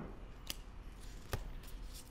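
Trading cards handled at a table: two light, sharp clicks as cards are sorted and tapped, one about half a second in and a louder one a little past a second.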